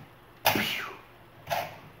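A man's mouth-made "pew" firing sounds, twice, imitating a toy cannon shooting.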